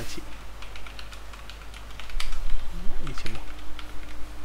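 Typing on a computer keyboard: a run of quick, irregular key clicks, bunched into a few short flurries.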